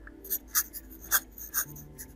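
Graphite pencil sketching on watercolour paper: about four short, quick strokes across the sheet.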